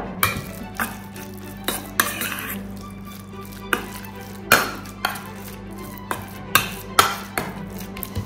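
A metal spoon stirring a thick grated-cheese, milk and egg filling in a stainless steel bowl, with irregular clinks and scrapes of the spoon against the bowl.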